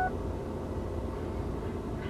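Steady low rumble of car-interior ambience, with no distinct events.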